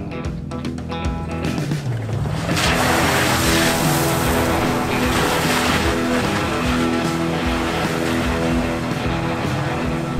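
Background music over a Toyota Tacoma's V6 engine running under load on a dirt trail, with its tyres throwing gravel and dust. The engine and tyre noise swells from about two and a half seconds in.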